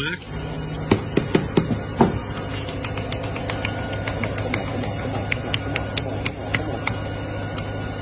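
A pressure-type concrete air meter being tapped repeatedly to settle its gauge needle for the air-content reading: a run of sharp taps, a few harder ones in the first two seconds, then lighter, quicker ticks until near the end. A steady engine hum runs underneath.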